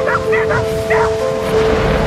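A rescue dog whining in short, high yips, about four in quick succession in the first second, over background music with long held notes.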